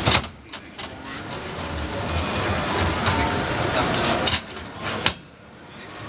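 Large metal tomato tins knocking and clanking as they are handled at a steel counter: a few sharp knocks near the start and two more in the second half.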